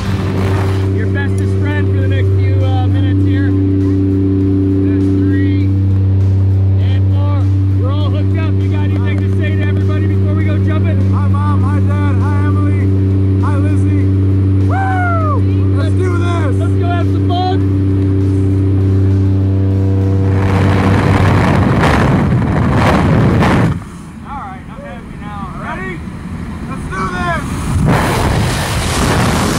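Jump plane's propeller engine droning steadily inside the cabin, with faint voices over it. About twenty seconds in the drone stops and a loud rushing noise takes over, dropping off suddenly a few seconds later.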